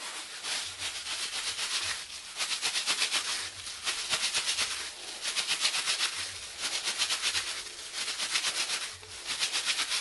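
A cloth rubbed quickly back and forth over the surface of a small clay pot coated with terra sigillata, polishing it: bursts of rapid strokes about a second long, broken by short pauses.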